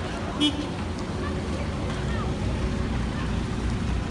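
Vehicles driving past at close range, a steady low engine and tyre rumble. A brief sharp sound cuts through about half a second in.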